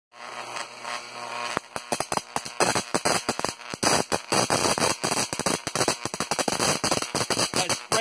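High-voltage arcs from a neon sign transformer crackling and snapping in rapid, irregular bursts. They start about a second and a half in, after a short low electrical buzz.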